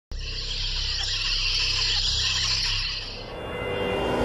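Logo-intro sound design: a steady hiss over a low rumble that starts abruptly, fades after about three seconds and gives way to music with held tones.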